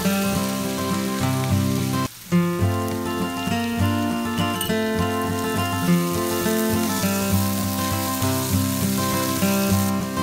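Background music, with the sizzle of diced ivy gourd frying in a pan underneath; the sound drops out briefly about two seconds in.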